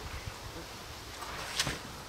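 Craft knife cutting a slab of soft clay on a wooden board, with one short, sharp scrape about one and a half seconds in over a steady outdoor background hiss.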